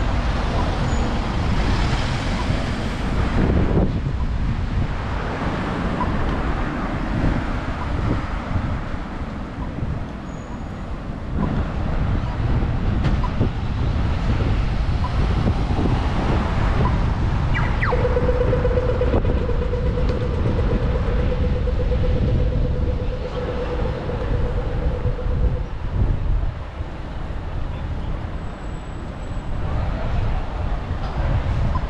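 Road traffic: cars driving through a busy street intersection, a steady rumble with passing swells. Midway a steady mid-pitched tone sounds for about seven seconds.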